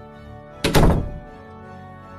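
A door shutting with one heavy thud about two-thirds of a second in, over soft sustained background music.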